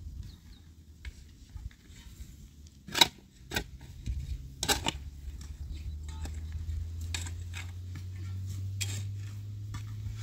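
Metal shovel blade digging into stony earth. It strikes stones with sharp clinks about three seconds and five seconds in. After that come lighter scrapes and the patter of soil and pebbles as shovelfuls are thrown.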